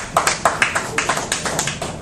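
A small audience applauding: a scattering of separate, irregular hand claps rather than a dense roar.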